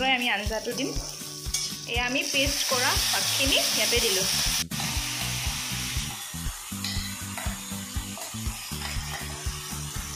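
Potatoes and onions frying in hot oil in a kadai, sizzling steadily, with a metal spatula knocking and scraping against the pan as they are stirred. A sharp click cuts through about halfway.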